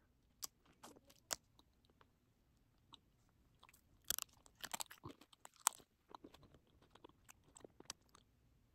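Faint crunching and chewing as a piece of hard candy moulded from melted beeswax crayons is bitten and chewed. There are a few isolated clicks at first, a dense run of crunches about four seconds in, then scattered small crackles.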